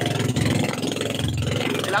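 Engine of a motorized outrigger fishing boat running steadily under way, with a fast even beat, over a hiss of wind and water along the hull.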